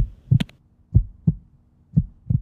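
Heartbeat sound effect: a steady lub-dub of paired low thumps, about one beat a second.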